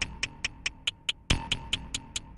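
A sample cut from a distorted 808, played back in mono as a hi-hat-like tick repeating about five times a second, with one fuller hit a little past halfway.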